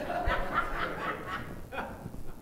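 Quiet chuckling laughter, in short broken bursts.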